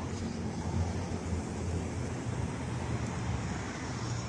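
Steady outdoor background noise, a low rumble with an even hiss over it and no distinct events.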